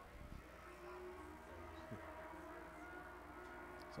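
Faint, steady drone of a pack of ModLite race car engines running on the track.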